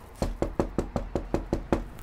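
Rapid knocking on a front door, about nine quick, even knocks at roughly five a second, which then stop.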